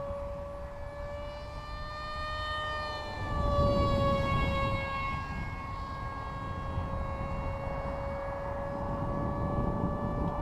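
Micro electric motor and propeller of a small foam RC park jet whining in flight, a steady high tone that wavers and dips slightly in pitch a few seconds in. Wind rumbles on the microphone underneath, strongest about four seconds in.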